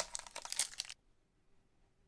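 A foil trading-card booster pack wrapper crinkling and crackling in the hands as it is opened, starting with a sharp crackle and lasting about a second.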